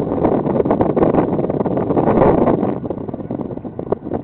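Boat noise and wind buffeting the microphone: a dense, rushing rumble that eases off about three seconds in.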